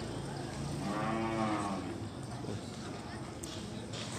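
One of the large humped cattle mooing: a single long moo whose pitch rises and then falls, lasting from about half a second to two seconds in.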